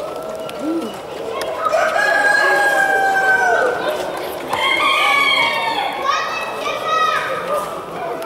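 Roosters crowing: three long crows one after another, starting about a second and a half in, over background chatter of voices.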